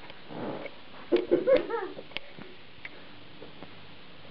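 A short, pitched vocal sound about a second in, rising and falling for under a second, with a few sharp clicks around it.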